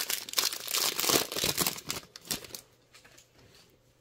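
Foil wrapper of a baseball-card pack being torn open and crinkled by hand, a dense crackling that dies away about two and a half seconds in.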